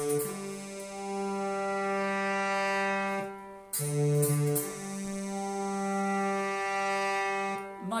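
Synthesized trombone-like brass sound from Analog Lab software holding two long chords. Each chord lasts about three and a half seconds, with a brief break between them.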